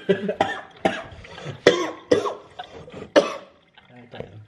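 A young woman laughing in short, breathy, cough-like bursts, about five of them, dying down near the end.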